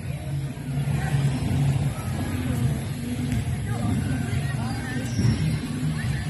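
Outdoor background noise: a steady low rumble with faint distant voices.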